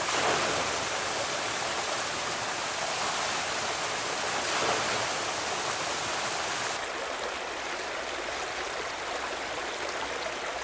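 Field recording of running water, a forest stream or small waterfall, as a steady rush; about seven seconds in it changes to a slightly quieter, duller section as playback moves on to another clip.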